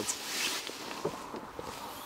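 Faint footsteps and a few soft clicks as the rear hatch of a Volkswagen New Beetle is unlatched and lifted, with a brief rustle near the start.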